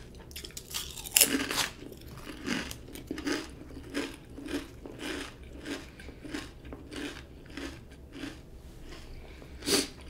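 Close-miked crunching and chewing of kettle-cooked jalapeño potato chips: a loud crisp crunch about a second in, then steady chewing at about two chews a second. Another loud crunchy bite comes near the end.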